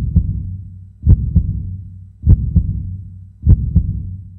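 Heartbeat sound effect: deep lub-dub double thumps, four beats about 1.2 s apart, each followed by a low rumble that fades away.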